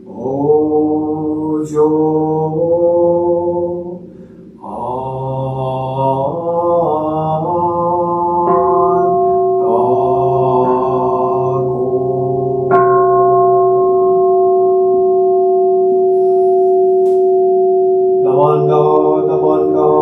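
A man chanting a Buddhist sutra, and a large bowl bell (kin) struck twice with a padded mallet, about eight and thirteen seconds in. Each strike leaves a deep, steady ringing tone that hangs under the chant for several seconds, and the chanting comes back strongly near the end.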